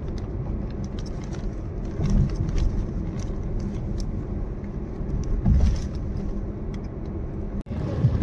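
Road noise heard inside a moving car's cabin: a steady low rumble of tyres and engine that swells briefly about two seconds in and again past halfway. The sound drops out for an instant just before the end.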